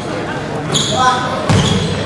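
Basketball game in a gym: sneakers squeaking on the hardwood court a little past halfway, a basketball bouncing, and voices echoing through the hall.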